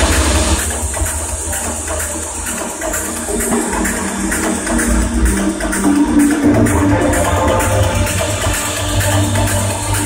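Electronic dance music from a techno DJ set played loud through a festival sound system, heard from the crowd: a heavy bass line under a quick ticking hi-hat pattern, with a pitched synth line rising out of the mix a little past the middle.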